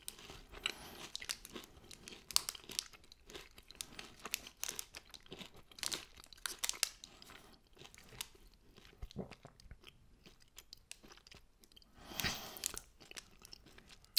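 Close, faint chewing of a Nestlé Lion chocolate bar (wafer, caramel and crisped cereal): many small irregular crunches, with a brief louder noise about twelve seconds in.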